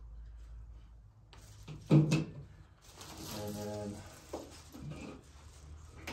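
Plastic wrapping crinkling as a cable is unwrapped, with a sharp knock about two seconds in and a brief steady tone partway through the rustling.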